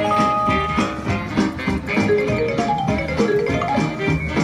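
WMS Gold Fish slot machine playing its bonus music with a steady beat. A held chime chord sounds at the start as a 3X multiplier comes up, and a run of short notes steps down in pitch near the end.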